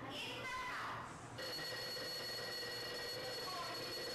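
A voice, then a steady ringing tone of several pitches held at once that starts suddenly about a second and a half in.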